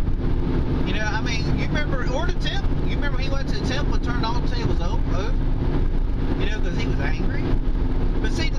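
Steady road and engine noise inside a moving car's cabin, under a man talking.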